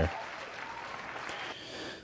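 Applause, steady and then trailing off near the end.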